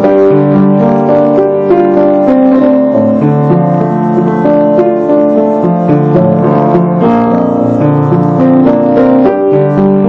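Solo piano played with both hands: a melody over lower bass notes, the notes sustained and overlapping in a continuous flow.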